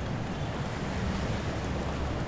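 Steady outdoor ambience: a low rumble of wind on the microphone over a faint background hiss, with no distinct events.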